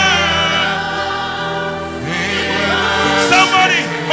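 Choir and congregation singing a slow gospel worship song over steady instrumental backing, with long held notes.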